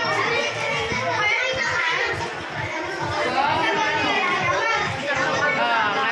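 Many children's voices talking and calling over one another in a crowded room, a steady hubbub of chatter.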